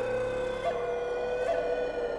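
Background score music: a slow melody of long held notes that steps to a new pitch twice.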